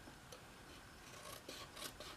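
Faint handling of cardstock with paper snips while tabs are being cut: soft rubbing of the paper, with a couple of small clicks about a second and a half in.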